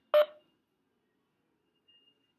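A single short electronic beep just after the start, then near silence with a faint thin high tone near the end.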